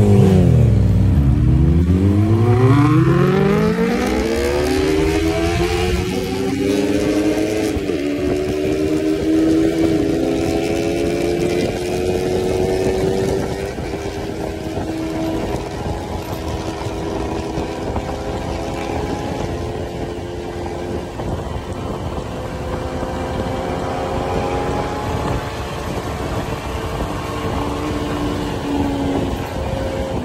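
Suzuki Bandit's inline-four engine accelerating hard, its pitch climbing steeply over the first several seconds, then running steadily at high revs with a rush of wind.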